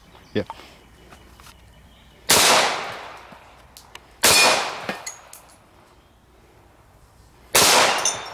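Three shots from a .45 ACP pistol firing 230-grain full metal jacket rounds, the first two about two seconds apart and the third about three seconds later. Each shot trails off over about a second.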